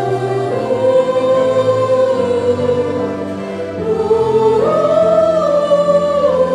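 Choir singing a slow song in long held notes, the melody stepping up to a higher note about four and a half seconds in.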